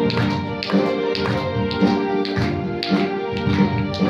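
Casio electronic keyboard playing a tune in a sustained, string-like voice over a rhythm accompaniment with a steady beat of about two strokes a second.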